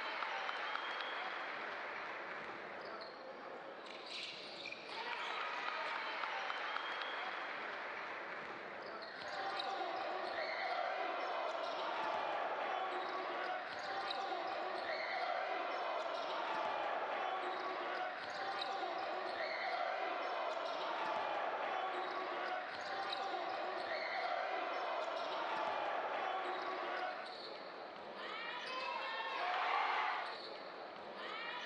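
Basketball game sound on an indoor hardwood court: the ball bouncing and short impacts from play, under continuous voices from the arena. Near the end comes a short swoosh, the loudest moment.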